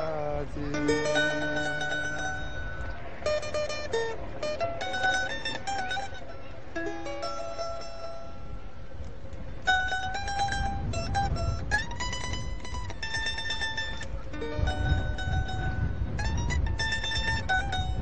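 A small plucked-string instrument plays a folk melody of single notes, some short and some held, as an instrumental passage between sung verses.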